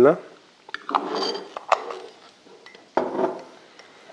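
A metal teaspoon clinking against a ceramic mug in scattered sharp taps while egg yolk, oil and honey are whisked into a dressing.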